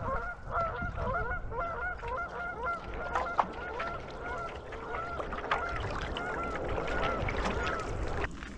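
A flock of geese honking over and over, many calls overlapping in a continuous chorus as the birds fly off.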